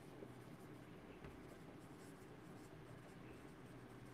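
Faint marker writing on a whiteboard, very quiet, with a couple of small ticks from the pen tip.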